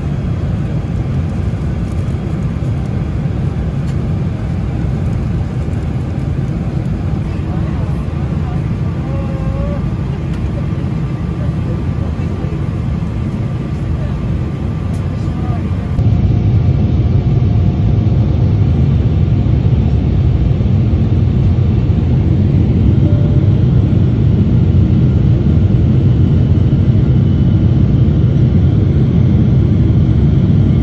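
Steady low rumble of an airliner cabin in flight, engine and airflow noise, on the descent into landing. It steps up in level about halfway through.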